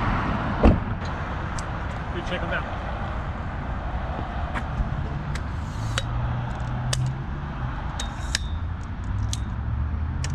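A car door thumps shut about a second in, followed by scattered light clicks and rattles of a tripod being handled and extended, over a steady low rumble.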